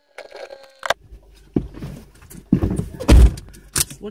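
A series of knocks and clunks inside a car, with one heavy thump about three seconds in.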